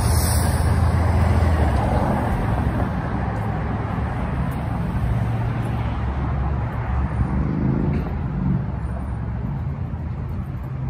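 Steady traffic noise on a busy multi-lane street: passing cars and trucks, with a low engine sound throughout. About three-quarters of the way in, one engine rises in pitch as a vehicle accelerates.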